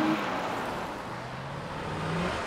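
A sheriff's patrol car driving by, its engine and tyre noise a steady rush that eases off through the middle and swells slightly near the end.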